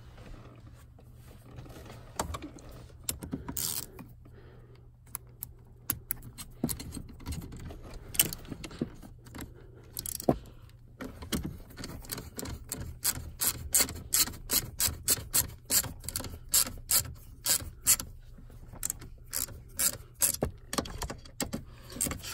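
Hand ratchet clicking as new 13 mm bolts are run into a steering lock housing. Scattered clicks and knocks of handling at first, then from about eleven seconds in a steady run of ratchet clicks, about two or three a second.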